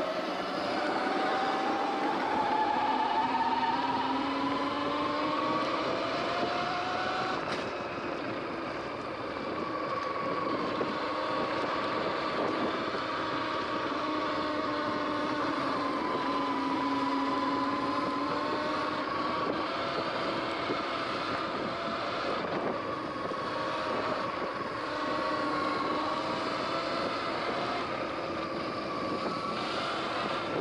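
Electric bike motor whining while riding on a dirt trail. The pitch rises as it speeds up at the start, then holds and wavers with speed, over a steady rush of tyre and wind noise. There is a single short tick about seven seconds in.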